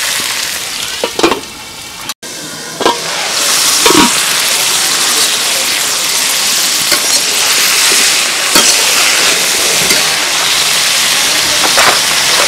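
Cauliflower florets sizzling as they fry in oil in a metal karahi, with a metal spatula scraping and knocking against the pan a few times. The sizzle cuts out for an instant about two seconds in and comes back louder.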